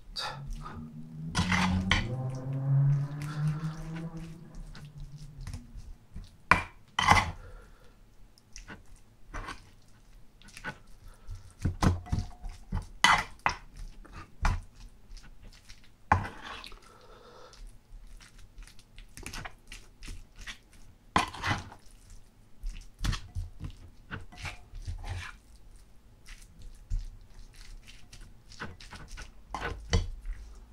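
A wooden spoon knocking and scraping in a wooden bowl as rice and stir-fried gopchang are mixed: irregular soft knocks and clicks throughout. A short hummed voice runs for about two seconds near the start.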